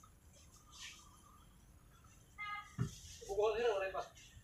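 Background voices of family members talking, heard near the end after a quiet stretch, with a short call and a knock just before.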